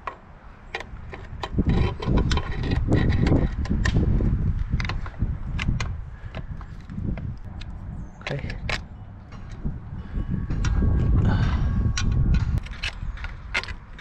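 Screwdriver and metal trailer parts clicking and clunking as the wiring of a trailer light on a steel winch post is worked loose. The clicks are irregular, over a low, uneven rumble.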